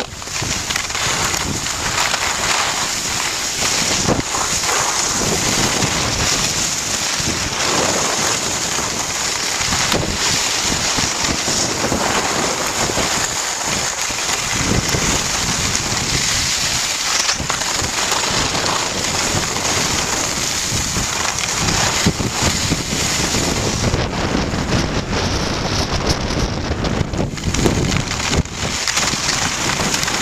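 Wind rushing over the microphone of a camera carried by a moving skier, mixed with the steady scrape of skis on packed snow. The noise is loud and continuous.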